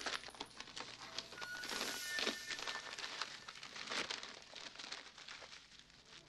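Close handling sounds: paper rustling with a dense string of small clicks and taps, and a brief faint ring about one and a half to two seconds in.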